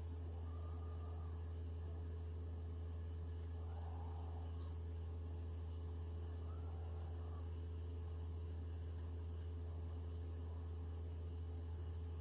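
A steady low hum, with a few faint clicks from a screwdriver tightening the screws on a resin printer's build-plate mount, two of them about four seconds in.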